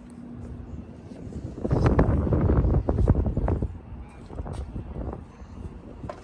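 Wind buffeting the microphone in gusts, a low rushing noise that swells about a second and a half in and eases off after about four seconds.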